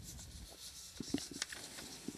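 Faint rustling with scattered small clicks, a few sharper ones a little after a second in: handling noise on the announcer's open microphone.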